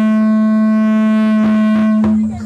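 One long musical note held at a steady pitch and an even loudness, without wavering, with a bright, many-overtoned tone.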